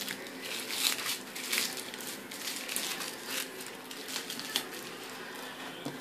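Light, irregular crinkling and rustling of small laminated paper pictures being picked up and handled, a quick run of small crackles.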